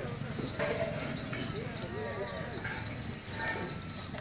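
Quiet open-air ambience: faint, indistinct murmuring voices in the background, with a steady high-pitched pulsing chirp.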